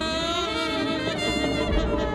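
Saxophones sounding a long, held note in a free-improvised jazz piece, with the band playing behind.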